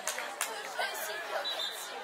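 Many young voices chattering and calling out at once, none standing out clearly, with a few short sharp taps in the first second.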